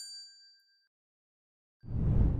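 Notification-bell chime sound effect ringing out and fading away within about a second. Near the end a deep rumbling swell rises.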